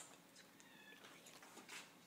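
Near silence: room tone, with a faint, brief high-pitched sound a little under a second in.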